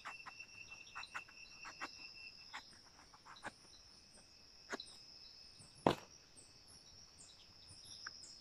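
Knife scoring around the hard rind of a peladera fruit: scattered small clicks and scrapes, with one louder click about six seconds in. Steady high-pitched insect calls run underneath.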